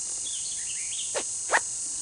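Ferro rod sliding in its tight-fitting woven sheath: two short scrapes about a second in, over a steady chorus of crickets.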